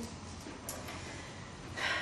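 A woman drawing breath in a pause in speech: a brief sharp sound about two-thirds of a second in, then a fuller, noisy intake of breath just before the end.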